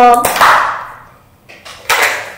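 A plastic snap-on lid being prised off a small tub of slime, coming free with one sharp snap near the end.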